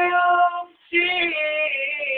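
Unaccompanied high-register singing by young male voices: a long held note, a brief break just before a second in, then another sustained note.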